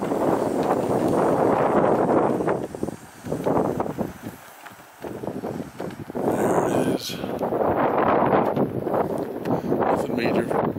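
Wind buffeting the microphone in strong gusts, easing for a few seconds around the middle before blowing hard again.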